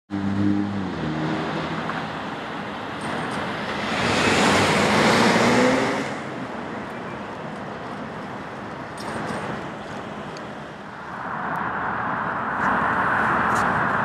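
Street traffic: a car engine running low at the start, then a car passing about four seconds in with its engine note rising, over steady road noise that swells again near the end.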